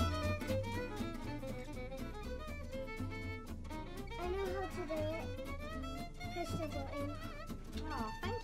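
Background music led by violin, with bowed strings over a low bass.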